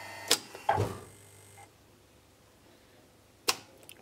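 A three-phase AC motor with a flywheel is stopped by DC injection braking: a sharp contactor click, a short low thump, and the motor's hum dies away within the first two seconds. About three and a half seconds in, another sharp click as the braking unit switches off.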